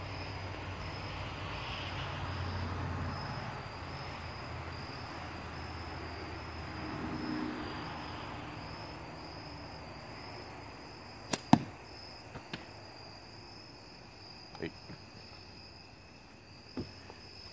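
Slingshot shot with light latex bands: a sharp snap of the release about eleven seconds in, followed a fraction of a second later by a louder crack of the ball striking the spinner target. Crickets chirp steadily throughout.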